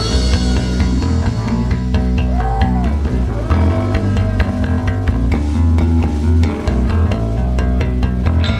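Live psychedelic rock band playing an instrumental passage with no vocals: electric bass to the fore over drums, with electric guitar above.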